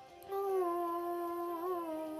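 A young woman humming one long held note, starting about a third of a second in and wavering slightly near the end.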